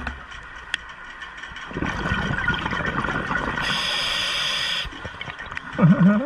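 Scuba diver's regulator underwater: a rush of exhaled bubbles starts about two seconds in and lasts about three seconds, with a hiss near its end. A short muffled sound that dips and rises in pitch comes right at the end.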